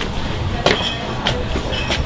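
Footsteps on a hard tiled floor, a step about every two-thirds of a second, with a few brief high clinks and background music.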